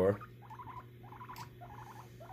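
Guinea pig making a run of short, soft squeaks, several a second.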